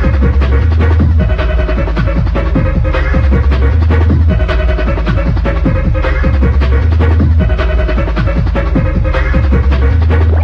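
Early-1990s rave music from a DJ mix, with a deep bass line that shifts pitch every second or two under busy, fast drums.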